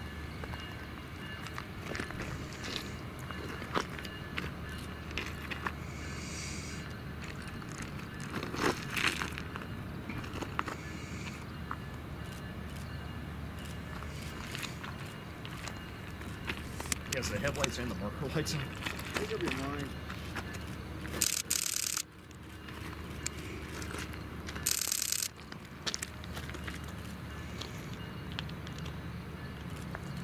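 Low, steady rumble of a Metrolink train creeping slowly out of a train wash, with scattered clicks and two short hisses about 21 and 25 seconds in.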